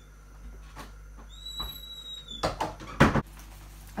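Handling sounds of a door and a winter parka being pulled on: a few faint clicks, a brief steady high tone, then two loud swishes of the jacket's fabric about two and a half and three seconds in.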